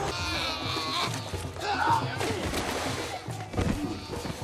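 Film soundtrack: score music mixed with animal-like creature cries, and a heavy low thud about three and a half seconds in.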